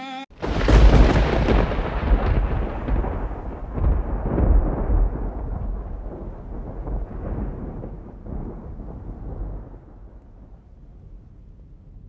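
Thunder: a sudden clap followed by a long, deep rolling rumble that slowly fades away over about ten seconds.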